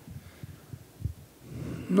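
Soft low thumps of a handheld microphone being picked up and handled, a few in the first second or so, then a faint breath as speech is about to start near the end.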